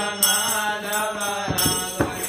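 Devotional chanting: a voice sings a mantra melody with held, gliding notes over a steady drone. Small hand cymbals jingle along, with a beat about a second and a half in.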